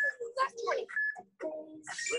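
Indistinct talking in short bursts, with a brief high steady tone about a second in.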